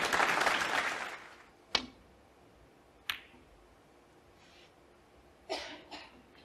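Brief audience applause that fades within the first second or so, followed by two sharp clicks of snooker balls about a second and a half apart. A short, softer sound comes near the end.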